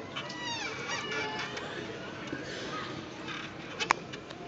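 A small child's high voice calling out from the audience, the pitch falling, about half a second in, over a low murmur of audience chatter; a sharp click just before the end.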